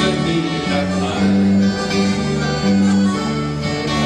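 Live dance band playing, with electric and acoustic guitars, drums and accordion.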